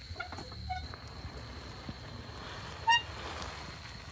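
Stone roller mill turning on its stone bed, a low rumble as it crushes garlic chive flowers into paste, with a few short high-pitched squeaks, the loudest about three seconds in.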